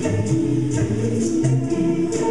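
Live-looped a cappella vocals: several sung parts layered into held chords, over a steady percussive pulse.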